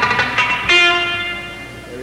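A guitar note struck sharply about two-thirds of a second in, ringing on at one steady pitch and slowly fading away.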